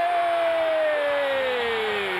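A TV sports commentator's long, unbroken shout, held on one vowel and sliding slowly down in pitch, over a cheering arena crowd.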